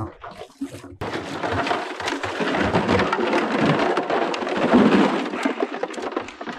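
Wading and pushing through shallow marsh water and dry grass: a dense, continuous splashing and rustling, full of small crackles, that starts suddenly about a second in.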